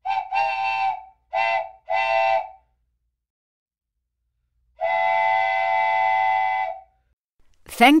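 Steam-train whistle sound effect, several steady tones sounding together: three toots and then one long blast of about two seconds.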